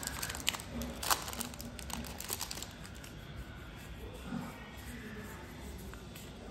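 Foil Yu-Gi-Oh booster pack wrapper being torn open and crinkled in the hands, with sharp crackles over the first two or three seconds, then quieter rustling as the cards are handled.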